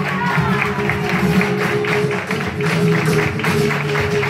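Live flamenco guitar playing, accompanied by rhythmic hand clapping (palmas) keeping time.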